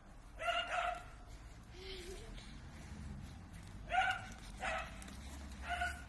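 A dog barking: about five short barks, a quick pair, then single barks a few seconds later.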